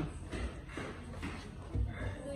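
Faint, indistinct voices with low thumps of movement, the loudest thump near the end.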